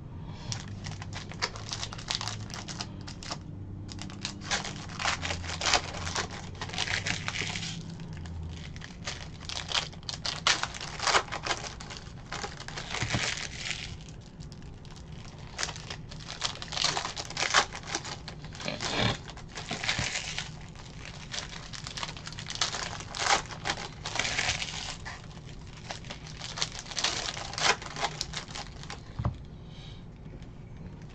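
Foil trading-card pack wrappers crinkling and tearing as packs are ripped open, with the cards inside handled and stacked, in a steady run of short crackling bursts.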